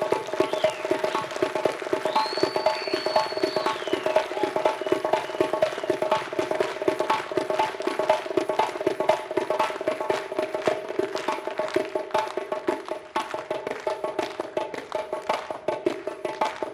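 Solo frame drum (doira) played by hand in fast, unbroken strokes. A high whistled note rises, holds and falls about two seconds in.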